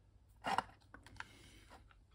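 Handling noise from a small metal television chassis being turned over in the hands: a short rustle about half a second in, then a few light clicks.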